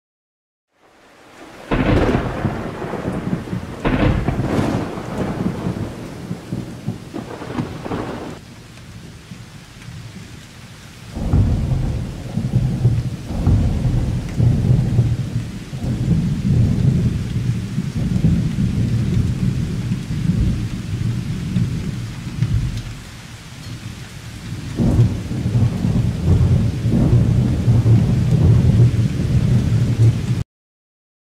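Thunderstorm: rain with sharp thunderclaps about two, four and eight seconds in, then long, heavy rolls of low thunder that swell and fade.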